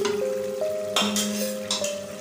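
Background music, a simple melody of clean electronic tones stepping from note to note. About a second in, a steel ladle scrapes and stirs through stew in a steel pot.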